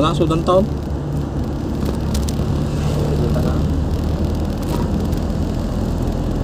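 Steady engine hum and road noise from the vehicle carrying the camera, holding an even speed on paved road.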